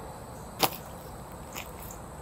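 A flip-flop slaps once, sharply, against the heel as a foot steps through garden mulch, with a fainter tap near the end, over a steady low outdoor hiss.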